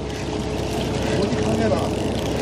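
Fishing boat's engine running with a steady hum under wind and sea noise, with a faint voice in the background about a second in.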